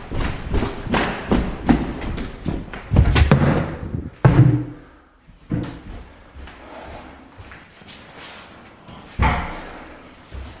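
A quick run of thumps and knocks, loudest about three and four seconds in, then fewer and quieter, with one more thud about nine seconds in.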